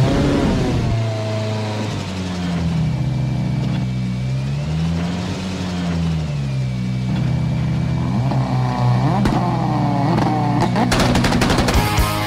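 Ford Fiesta rally car engine revving up and down several times, its pitch sliding repeatedly. About a second before the end, sharp hits come in as music starts.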